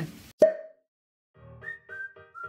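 A single short pop sound effect with a brief dying tone, then, after a short pause, a quick jingle of short plucked notes stepping down in pitch that accompanies a title-card transition.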